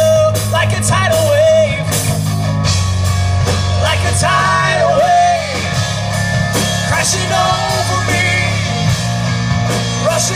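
Live rock band playing: drum kit, electric guitars and bass. A lead melody rises and falls over a steady low bass line, coming back in short phrases.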